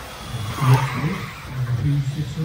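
Electric RC buggies with 17.5-turn brushless motors running on the track, with a short swell of motor and tyre noise a little under a second in, under people talking.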